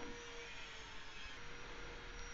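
Faint room tone: a steady low hiss with a faint, even hum and a thin steady tone underneath.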